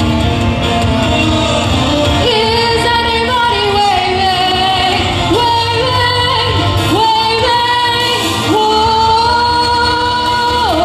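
A young female vocalist singing into a microphone over instrumental accompaniment. She holds several long high notes, sliding up into each one.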